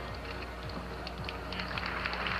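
Faint music playing over an arena PA system beneath a steady low hum, with the crowd's noise swelling near the end.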